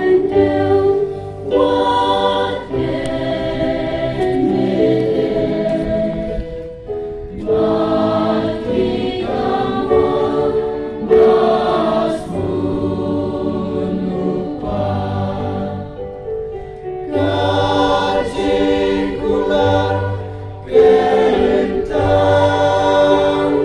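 Male choir singing a hymn in long held phrases, with brief pauses between the lines.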